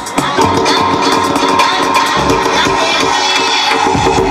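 Music mixed by a DJ on CD decks and a mixer, playing loud through speakers. After a brief dip at the very start, a long held high note runs over a lighter beat.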